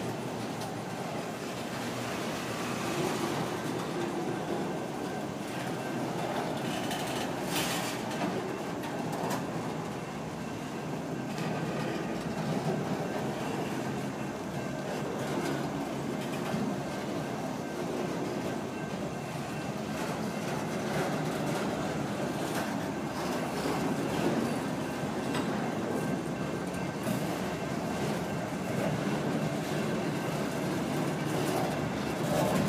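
CSX freight train of autorack cars rolling past: a steady rolling noise of steel wheels on the rails, with a few sharper clicks along the way.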